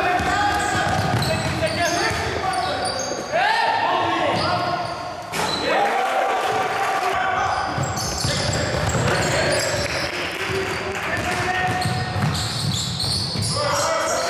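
Sounds of a basketball game in a large echoing sports hall: the ball bouncing on the court and players' feet, with voices calling out in long held shouts.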